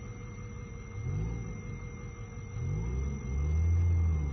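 Forklift engine running and revving up and down twice as it drives, louder near the end.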